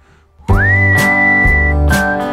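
Background music: a whistled melody over strummed guitar, starting again about half a second in after a brief silent break. The whistle slides up into one long high note, then moves to a lower one.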